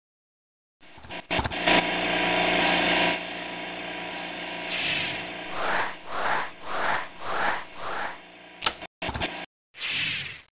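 Animation sound effect of an electric vacuum pump starting with a few clicks and running with a steady machine hum while it draws the air out of a wood-treating cylinder. Later comes a rhythmic series of about five whooshes of air, roughly two a second.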